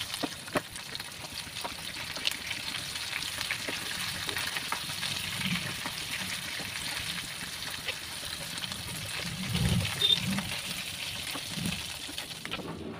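Taro root chunks sizzling and crackling as they shallow-fry in hot oil in a nonstick kadhai, with scattered pops. A plastic spoon stirs them, and there are a few soft low bumps near the end.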